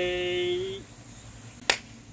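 A man's voice holding one steady, drawn-out note for under a second, then a single sharp finger snap about 1.7 seconds in.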